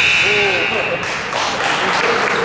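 Gym scoreboard buzzer sounding one steady high tone as the game clock runs out at zero, cutting off about a second and a half in. Voices call out over it.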